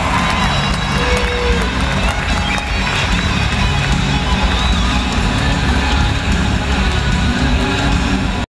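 Loud music playing through an arena's sound system, with a crowd cheering underneath.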